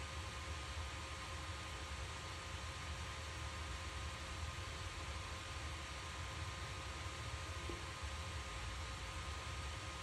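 Faint, steady hiss and low hum with a few thin, constant whine tones: small cooling fans running on the resistor-bank heatsink and charger during a high-current discharge.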